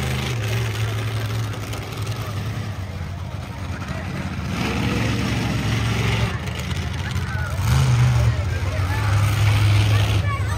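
Monster truck engine running and revving as the truck drives across the dirt arena, its low rumble rising in pitch and getting louder about eight seconds in and again near the end.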